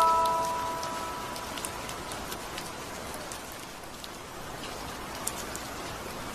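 Steady rain with scattered drops. The last music-box notes ring out and fade during the first second.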